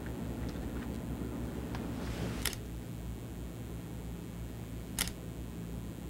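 Two sharp clicks about two and a half seconds apart, over a steady low room hum.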